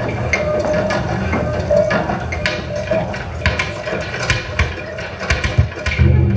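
Live experimental electronic music: a wavering mid-pitched tone over a low hum, with scattered clicks and crackles that come thicker in the second half as the tone fades.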